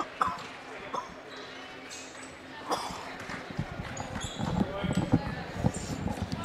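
Gymnasium sounds during a stoppage in play: thuds on the hardwood court that grow busier about halfway through, a few short high sneaker squeaks, and crowd chatter.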